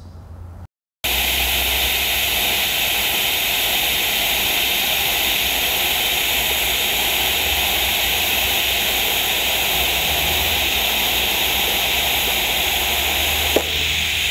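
TIG welding arc running an autogenous bead, with no filler rod, on a quarter-inch plate inside corner joint: a steady, even hiss with a low hum under it, starting about a second in and holding unchanged.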